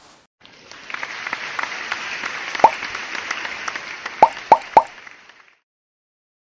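A rustling, crackling noise lasting about five seconds, dotted with small clicks, with four short plops that drop in pitch: one near the middle and three in quick succession near the end.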